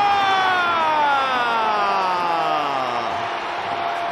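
Stadium goal siren sounding after a home goal: a steady, many-toned wail that winds down in pitch over about three seconds, over crowd noise. A steadier tone takes over near the end.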